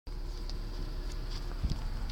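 Handling noise from a phone being moved about inside a car cabin: low rumble and faint ticks and rubbing, with one dull thump about one and a half seconds in.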